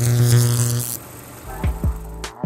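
Electronic glitch sound effect: a loud buzzing hum with static that cuts off about a second in. Then electronic music starts, with deep drum hits dropping in pitch.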